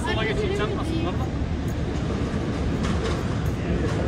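Voices calling out in the street over a steady low rumble of street noise; the voices are clearest in the first second.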